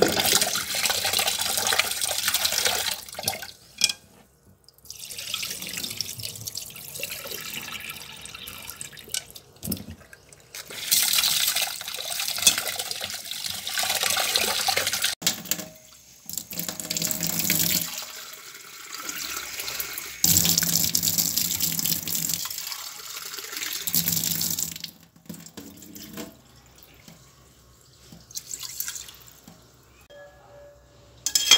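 Tap water running into a metal pot of rice as the rice is rinsed before cooking. The running water comes in stretches of several seconds with short breaks between them, and is quieter over the last few seconds.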